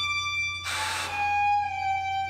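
Live improvised music led by a violin holding long, sustained notes, with a short burst of hiss under it about two-thirds of a second in.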